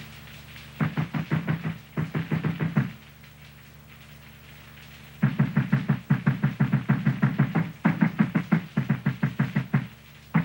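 Frantic, rapid pounding on a wooden door. Two short bursts of knocks come about one and two seconds in, then after a pause a long, unbroken run of loud knocking starts about five seconds in.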